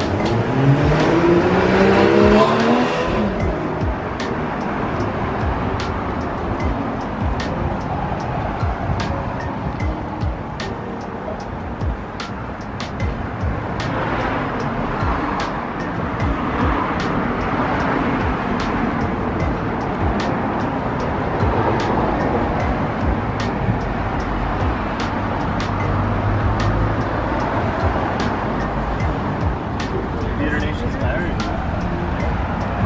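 A car accelerating past, its engine note rising in pitch over the first few seconds; then steady street traffic noise.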